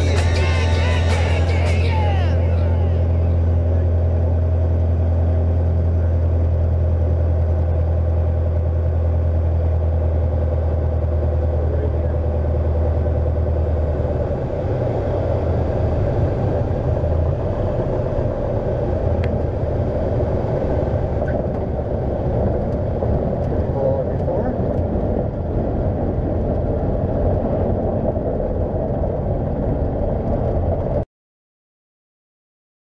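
Music fades out in the first couple of seconds, leaving the engine and propeller of a Van's RV light aircraft droning steadily in the cockpit on approach. About halfway through, the steady drone gives way to a rougher, noisier rumble as the power comes back for the landing and the plane rolls out on the runway.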